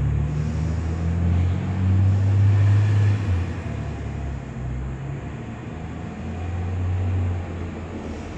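A low sustained drone whose deep tones step to a new pitch every second or two, over a faint steady hiss.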